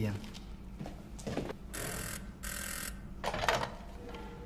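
Bell of a wall-mounted telephone ringing in two short bursts, about two seconds in.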